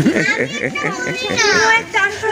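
Several excited voices, children's and women's, talking and exclaiming over one another, with one high voice gliding down in a squeal about one and a half seconds in.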